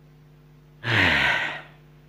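A loud, breathy sigh from the storyteller's voice, falling in pitch, starting almost a second in and lasting about half a second, over a steady low hum.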